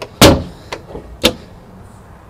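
A boat's deck storage hatch lid shutting with one loud thud, followed by two lighter clicks about half a second apart.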